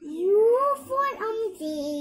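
A young girl's voice reciting the alphabet chart in a sing-song chant, her pitch rising and falling from phrase to phrase.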